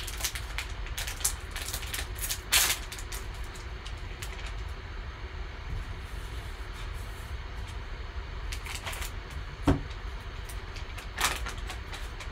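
Foil trading-card pack wrapper crinkling and rustling as it is opened and a plastic-slabbed graded card is handled, with a sharp knock near the end, over a steady low hum.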